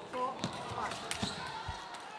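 Table tennis rally: the ball clicking sharply off the bats and the table, a few hits about half a second apart.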